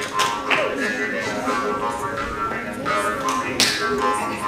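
Doromb (Hungarian jew's harp) being played: a twanging drone with a stack of overtones, struck by irregular plucks.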